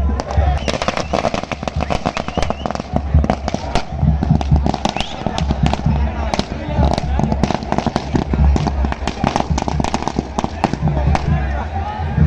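Firecrackers going off on the open ground: a fast, irregular run of sharp bangs and cracks lasting most of ten seconds, thinning out near the end.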